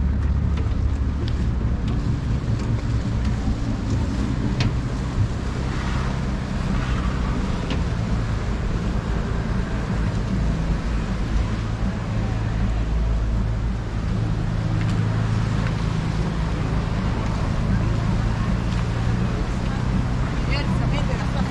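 Steady low engine drone, several low pitches held together, over a continuous outdoor hiss.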